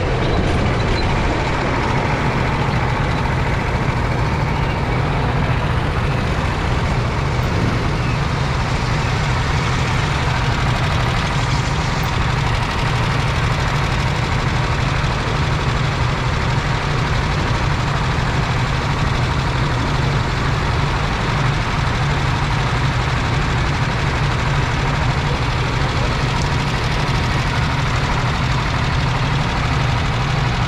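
Go-kart's single-cylinder four-stroke engine running at low, steady revs, heard up close from the driver's seat, with other karts' engines running nearby.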